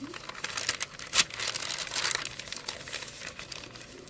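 Stiff paper pages of a handmade junk journal being turned and handled, rustling and crinkling, with one sharper tick about a second in.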